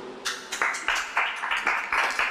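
Audience applauding, starting about a quarter of a second in.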